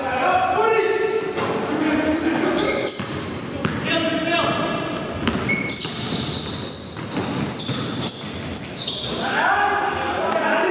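A basketball bouncing on a hardwood gym floor in an echoing hall, with a few sharp strokes, against voices that carry on throughout.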